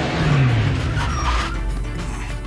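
Sports car driving fast past the camera, its engine note falling in pitch during the first second, with film score music over it that comes to the fore about a second and a half in.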